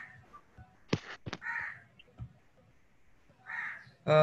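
A bird calling twice in short calls, about a second and a half in and again near the end. Two sharp clicks come just before the first call.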